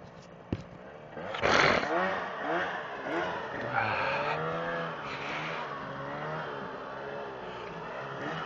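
Snowmobile engine revving in deep snow: it comes in suddenly and loudest about a second and a half in, then its pitch rises and falls over and over.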